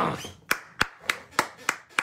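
A man clapping his hands in a steady rhythm, about three claps a second.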